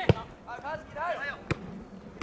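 Soccer ball kicked twice: two sharp thuds about a second and a half apart, the first the louder.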